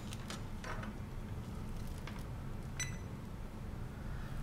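Faint clicks of a multimeter's test leads and probes being handled on a table, with one brighter short tick about three seconds in, over a low steady hum.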